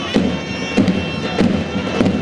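Zurna and davul playing: a shrill, held double-reed melody over drum beats falling about every 0.6 seconds, the traditional music that accompanies Turkish oil wrestling.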